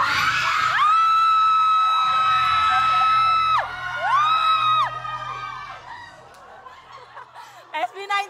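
A woman's long, high-pitched scream of excitement, held on one note for about three seconds, then a second shorter scream, over the noise of an excited crowd that thins out into scattered voices near the end.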